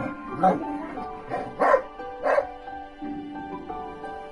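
A dog barking three short times during rough play, over steady background music.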